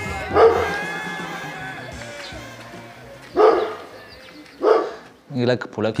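A dog barking three times, single barks a few seconds apart, over soft background music that fades out. A man starts speaking near the end.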